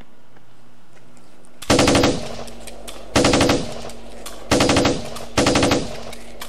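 Four short bursts of machine-gun fire, each about half a second of rapid shots, the first a little under two seconds in and the others following at roughly one-second gaps.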